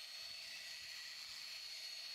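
Faint, steady whine and hiss of a portable drill spinning a loose cotton buffing wheel while it buffs a non-skid fibreglass deck.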